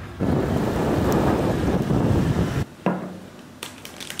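Wind buffeting the microphone in the open air: a loud rumbling rush for about two and a half seconds that cuts off suddenly. After it comes a much quieter room with a light knock and a couple of faint clicks.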